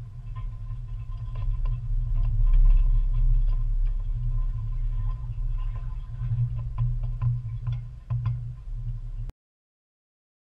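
Low rumble with scattered rattling knocks from a boat trailer being backed down a grooved concrete launch ramp, picked up by a camera mounted on the trailer under the pontoon boat. The sound cuts off abruptly shortly before the end.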